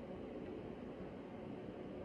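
Faint steady background hiss of room tone, with no distinct event.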